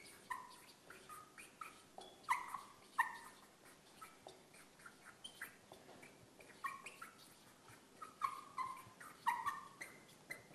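Marker squeaking on a whiteboard as words are written: many short, high squeaks in quick irregular strokes, some sliding down in pitch.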